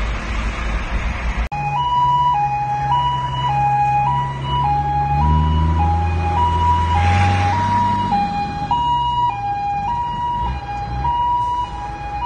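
Emergency vehicle two-tone siren, switching back and forth between a high and a low note about every 0.6 s, starting suddenly about a second and a half in, over the low hum of a running vehicle engine that swells in the middle.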